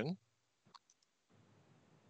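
A few faint computer mouse clicks in quick succession, about three-quarters of a second in, as tree nodes are expanded in a database tool.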